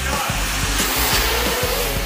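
Small FPV racing quadcopters' electric motors and propellers spinning up, a steady high whir, over background music with a regular beat.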